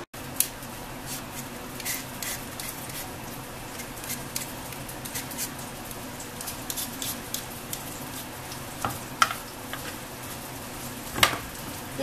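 Chopped tomato and onion frying in a little oil in a pot: a steady sizzle with scattered sharp pops and crackles, one louder near the end.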